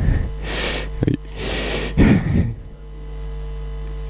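Soft, breathy laughter in a few short bursts over the first couple of seconds, over a steady low electrical hum that is left on its own near the end.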